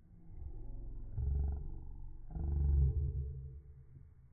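A person's voice making two long, low drawn-out sounds, each about a second long, the second one louder.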